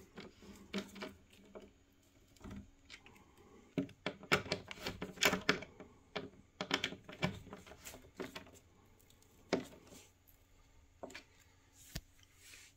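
A hand screwdriver turning the metal cam locks of flat-pack particleboard furniture, giving irregular clicks and small knocks as the cams tighten. Most of them come in bunches in the middle of the stretch.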